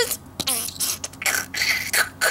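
A person coughing a few short times in the second half, just after speaking.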